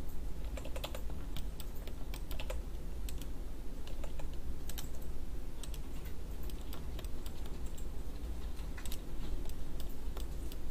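Irregular clicks of a computer mouse and keyboard in use, over a steady low hum.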